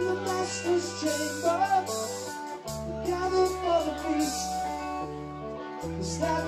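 Live rock band playing on electric and acoustic guitars, bass and drums, with a bending lead melody over held bass notes that change about two and a half seconds in and again near the end.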